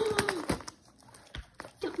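Dog tearing wrapping paper off a gift with its mouth: a few faint crinkles and clicks of paper in a quiet stretch between spoken words.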